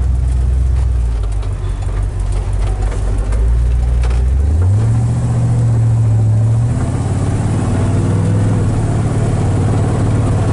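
The 350 cubic-inch V8 of a 1941 Ford pickup resto-mod pulling away, heard from inside the cab. Its low, steady note steps up in pitch about halfway through as it accelerates, then eases slightly about two seconds later at a shift of the three-speed automatic.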